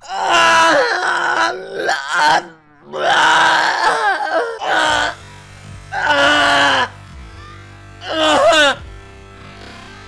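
A man groaning loudly in four long, drawn-out wails, the first two lasting a couple of seconds each and the last a short one falling in pitch near the end, over anime opening theme music playing more quietly underneath.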